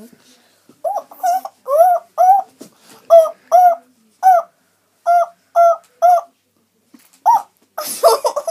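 A young girl's vocal monkey impression: about a dozen short, high calls, each rising and falling in pitch, spread out with pauses between them.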